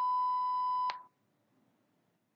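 A single steady electronic beep of one pitch, about a second long, cutting off cleanly about a second in. It is the cue tone of an interpreting-test dialogue, marking the end of a segment and the moment for the interpreter to begin.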